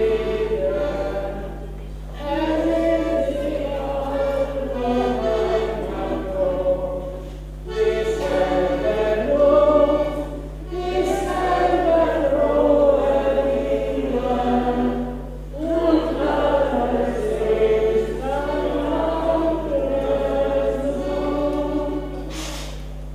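A button accordion played with singing in a folk tune, in phrases a few seconds long with brief pauses between them. A steady low hum runs underneath.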